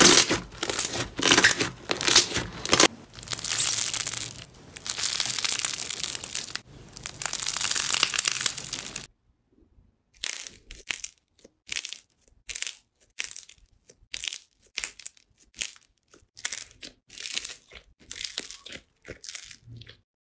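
Hands pressing and kneading pink slime, making a dense run of crackly, crushing noises. About nine seconds in the sound stops briefly, then comes back as separate short crackles as another slime is squeezed.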